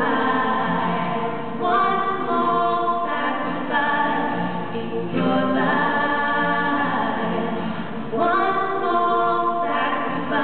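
Female vocals singing a song live in long held phrases, accompanied by an acoustic guitar.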